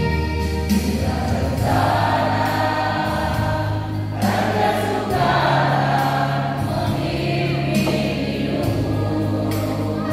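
A mixed choir of men and women singing a hymn in church, over instrumental accompaniment that holds sustained low bass notes.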